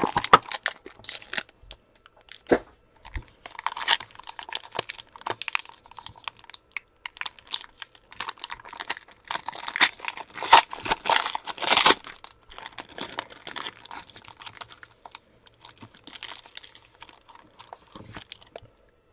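Foil trading-card pack wrapper crinkling and tearing as it is ripped open and the cards are pulled out, in irregular crackly bursts that are loudest about ten to twelve seconds in.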